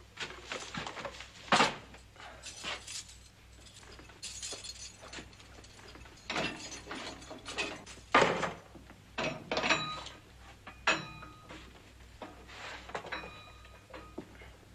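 A string of metallic clicks and clanks from a key working the lock of an iron-barred jail cell door and the door being handled, followed by metal dishes on a tray clinking and ringing briefly as they are set down. The two loudest clanks come about a second and a half in and about eight seconds in.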